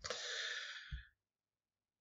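A person's breath, a soft rush of air about a second long, with a brief low click near its end.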